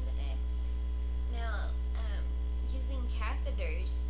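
Steady low electrical mains hum running under the recording, with a faint voice coming in briefly twice.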